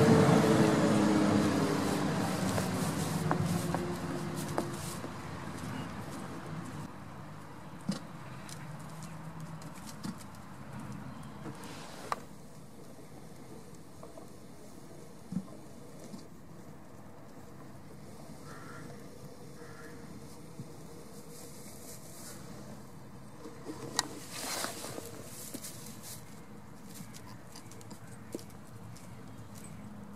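A motor vehicle passing close by, fading away over the first several seconds. Then faint outdoor ambience with scattered small knocks and rustles, and one brief louder rustle near the end.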